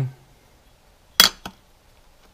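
An aluminium fuel-pump ring set down on an aluminium sheet: a sharp metallic clink a little over a second in, then a lighter tap.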